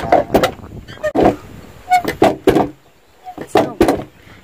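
Women's voices in short bursts of speech, with brief pauses between them.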